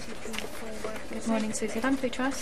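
Indistinct speech: a person's voice talking in the background, with no words clear enough to make out.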